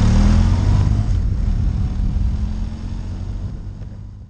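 Benelli TRK 502 X's parallel-twin engine running as the motorcycle rides along the road, with a noisy rush over it, fading out steadily toward the end.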